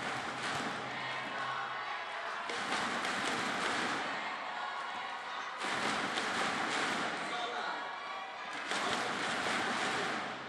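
Arena crowd cheering and shouting, rising in three loud waves a few seconds apart.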